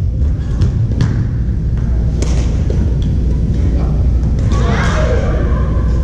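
Badminton play in a large, echoing gym hall: a steady low rumble with thuds and a few sharp racket-on-shuttlecock hits scattered through it, and a brief wavering higher sound near the end.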